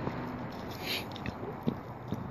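Handling noise from a handheld phone being turned: a brief rub about a second in, then a few small clicks and knocks against the microphone.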